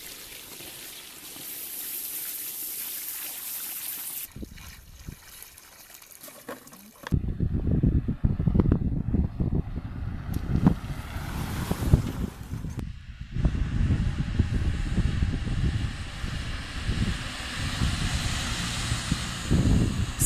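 Water poured from a plastic jug into a plastic-lined drinking basin, splashing steadily for about four seconds. From about seven seconds in, a louder, uneven low rumble takes over.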